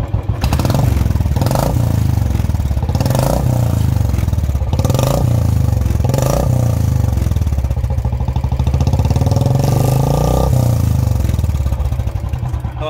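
Royal Enfield Classic 350's single-cylinder engine revved through an aftermarket stainless-steel sound-adjustable free-flow silencer. It gives about four short throttle blips, then a longer rev near the end, and eases back toward idle.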